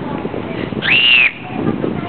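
A child's short, high-pitched squeal about a second in, rising quickly and then held for under half a second.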